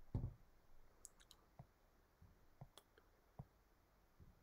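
Near silence broken by a few faint, scattered clicks at a computer, about six in all, irregularly spaced.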